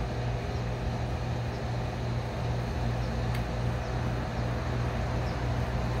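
Steady low machine hum holding one pitch, with a single faint click about three seconds in.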